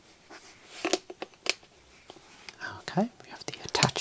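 Hands handling a hardcover notebook with a metal clasp: a few sharp clicks and taps about a second in. A soft, whispery voice comes in near the end.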